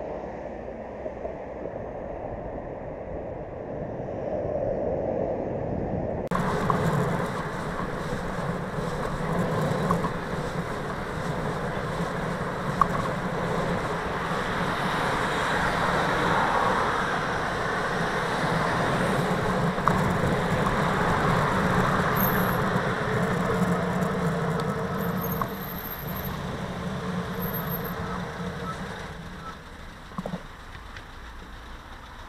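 Road traffic noise and wind on a bicycle camera's microphone while riding among cars and vans. The sound changes abruptly about six seconds in and then stays a steady, fuller noise.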